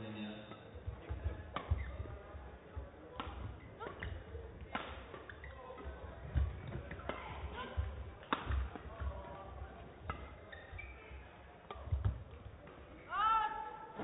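Badminton rally: rackets strike the shuttlecock in sharp hits about a second apart, with low thuds of players' footwork on the court. It ends with a short shout about a second before the end.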